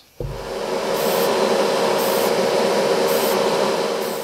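Spray booth exhaust fan running steadily, with a brief high hiss about once a second.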